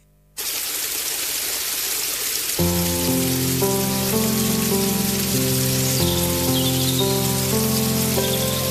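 A steady rain-like hiss starts after a brief silence. About two and a half seconds in, slow, sustained music chords come in over it, forming the opening sound bed of a radio segment.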